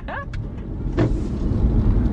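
Low, steady rumble of a car's engine and road noise heard from inside the cabin, with a single short click about a second in.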